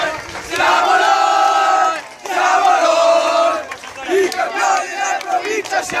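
A group of teenage boys chanting loudly together in celebration, in repeated held phrases about a second and a half long with brief breaks between them.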